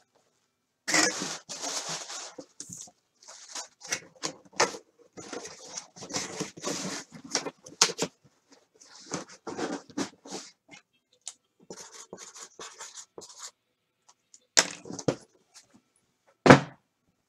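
Packaging and cardboard being handled and rummaged through, in irregular rustling and scraping spells, with a couple of sharp knocks near the end.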